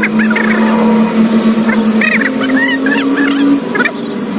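A motor running steadily with an even hum, its pitch stepping up for about a second and a half in the second half, then dropping back. Higher wavering chirps or distant voices sound over it.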